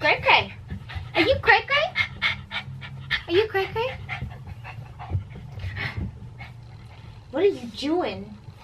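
A senior pug mix panting in quick, repeated breaths, with a woman's voice talking softly at times over it.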